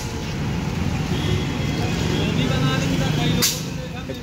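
Steady low rumble of a motor vehicle running nearby, with a single sharp click near the end.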